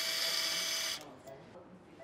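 Powered surgical wire driver spinning a Kirschner wire into the distal radius, a steady high-pitched whine that stops suddenly about a second in.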